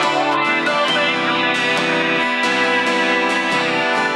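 Steel-string acoustic guitar strummed through a chord progression, with regular fresh strokes and the chord changing a few times.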